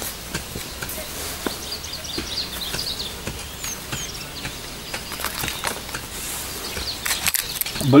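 A gloved hand scooping and scraping loose, sandy garden soil to dig a planting hole, with soft scratches and small clicks. Faint bird chirps come about two to three seconds in.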